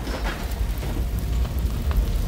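Sound effect of a gas explosion and fire: a heavy low rumble with a dense crackle over it, begun abruptly just before, with a few sharper snaps near the end.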